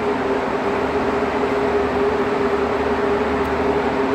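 Steady hum of a ventilation fan running, with two steady low tones over an even rush of air.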